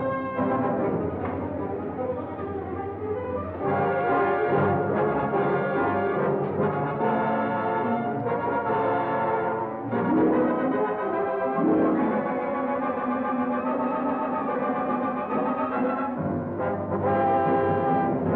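Orchestral film score led by brass, holding sustained chords that change every few seconds.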